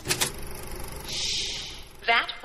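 A produced sound effect opening the podcast network's intro: a sudden hit, then a rushing hiss that swells and fades about a second in.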